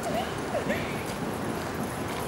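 Two short yelping animal calls, one after the other in the first second, over a steady background hum.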